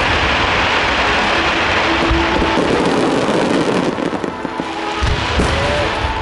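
Fireworks barrage: large shakudama (one-shaku, about 30 cm) aerial shells launched and bursting in rapid succession. The bursts run together into a dense, continuous crackle that eases briefly about four seconds in.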